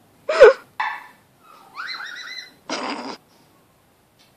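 A woman's wordless vocal noises: a sharp, loud yelp, a short grunt, a longer rising squeal and a breathy burst, the strained sounds of clambering into a rope hammock.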